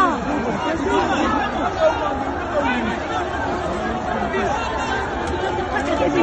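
A crowd of people shouting and talking over one another at once: an unbroken din of overlapping voices, with no single voice standing out.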